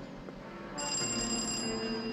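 Doorbell ringing once, a steady high-pitched electric ring lasting about a second that starts partway in, over background music.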